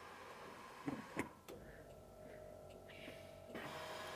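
Two clicks from pressing the cargo-area height button, then a faint steady whine as the Land Rover Defender's air suspension raises the car for about two seconds, stopping suddenly.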